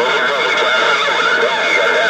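A Galaxy CB radio receiving a long-distance station: a garbled, warbling voice under heavy, steady static.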